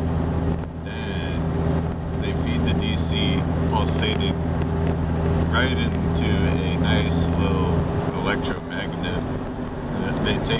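A 1998 Jeep Cherokee's engine and road noise heard inside the cabin while driving: a steady low drone whose deepest part drops away about eight seconds in. A man's voice is heard over it.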